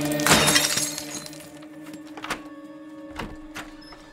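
A glass pane in a door smashed, shattering loudly about half a second in, with a few smaller knocks and clinks of glass after it, over a steady droning music score.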